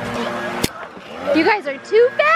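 A single sharp knock about two-thirds of a second in, then children's high-pitched excited voices squealing and calling out from about halfway through.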